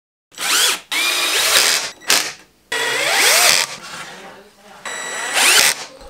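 Cordless drill driving screws into plywood in about five short bursts, the motor's pitch rising as each burst spins up.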